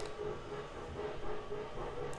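Faint steady low hum over background noise: room tone in a pause between speech.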